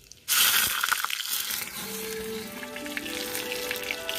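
A sudden loud sizzle about a third of a second in, as something goes into hot oil in a pan over a wood fire, settling into a steady sizzle. Background music with held notes comes in about two seconds in.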